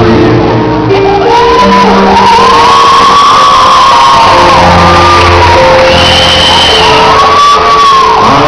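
Live band performance of a Brazilian rock song: a singer holding long, loud notes over steady band accompaniment, heard with the echo of a large hall.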